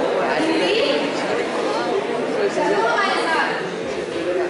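Only speech: people talking, with voices overlapping.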